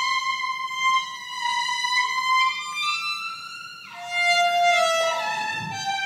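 Solo violin playing a slow melody of long bowed notes, with a quick downward slide into a lower note about four seconds in.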